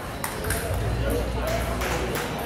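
Table tennis ball clicking sharply off the bats and table a few times as a rally is played out, over the steady murmur of voices in a busy hall.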